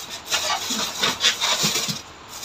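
Polystyrene foam packing insert rubbing and scraping against the inside of a cardboard box as it is pulled out, with a few short squeaks.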